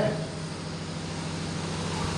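A pause between spoken phrases: steady background noise with a low, even hum, the room tone of the hall as picked up by the preacher's microphone.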